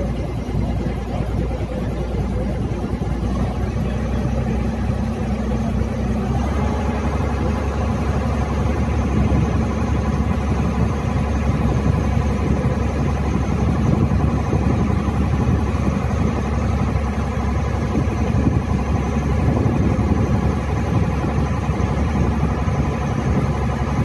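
A boat engine running steadily, heard from on board as a continuous low drone with a faint steady hum above it.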